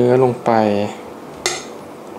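A metal spoon clinks once, sharply, with a brief high ring, as spicy beef salad is scooped out of a stainless steel mixing bowl onto a plate.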